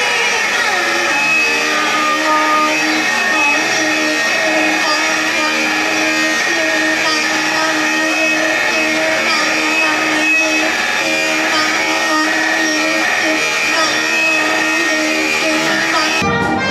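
Loud live noise music: a dense, unbroken drone of distorted sustained tones, with several pitches sliding up and down over a noisy haze.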